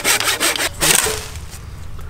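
Hand pruning saw cutting down through a live tree branch with a quick run of strokes, which stop about halfway through as the cut is finished. This is the top cut of a three-cut pruning, made just beyond an undercut so the branch drops off without tearing the bark.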